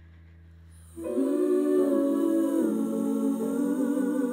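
A low digital-piano chord held quietly, then about a second in a woman's voice comes in loudly, humming a wordless melody with vibrato over the piano.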